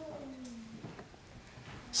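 A soft, low chuckle that falls in pitch during the first second, then quiet room tone.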